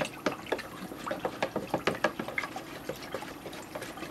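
Plastic spoon stirring a liquid yeast mixture in a square plastic tub, with irregular quick clicks and knocks, several a second, as the spoon hits the sides and bottom.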